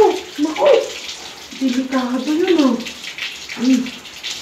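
Water sloshing and dripping in a plastic bucket as a small child is bathed and lifted out of it, under a woman's sing-song voice, which is the loudest sound.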